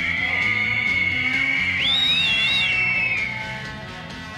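Hand whistles blown by a crowd of demonstrators: a continuous shrill whistling, with a second, higher whistle joining about two seconds in, dying down toward the end.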